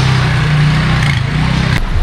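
A motor vehicle's engine running close by, a steady low hum over road and street noise, ending abruptly near the end.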